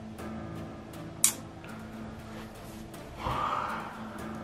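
Quiet background music with held notes. A short sharp click comes about a second in, and near the end a man lets out an audible breath, a sigh or exhale.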